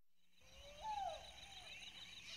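Night-time ambience fading in: insects chirping steadily in a fast pulsing chirr, with one short call about a second in that rises and then falls in pitch.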